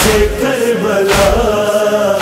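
Male chorus chanting an Urdu noha, a Shia lament, holding long notes in unison over a deep beat that falls about once a second, twice here.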